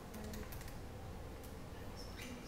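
Buttons on a handheld graphing calculator being pressed: a few irregular small plastic clicks over a low room hum.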